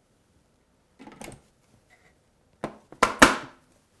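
Plastic parts of a Philips Avance juicer being handled. There is a soft knock about a second in, then sharper knocks and a louder clatter near the end as the feeder tube is lifted and set on the juicer body.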